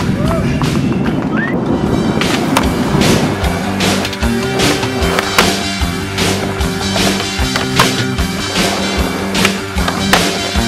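Skateboard wheels rolling on pavement, with sharp clacks of the board, mixed with background music.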